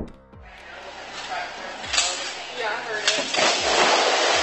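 A large bag of foam packing peanuts dropping and spilling: a loud, rushing rustle of loose peanuts pouring out, with a couple of dull thumps and some short vocal cries over it.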